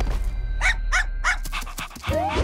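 A dog barking three short, high yelps in quick succession, over low background music with a few light clicks.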